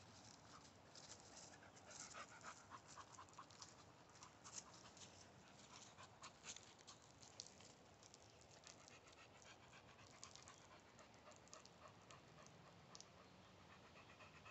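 Near silence, with a pit bull panting faintly and scattered small clicks and rustles.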